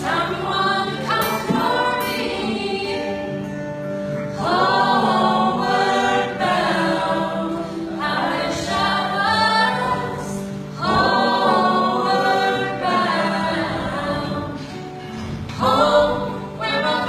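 Live acoustic performance: a woman singing lead over two strummed acoustic guitars, in sung phrases of a few seconds each.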